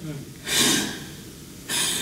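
A person's sharp, breathy gasp close to a handheld microphone about half a second in, followed by a short hiss of indrawn breath near the end.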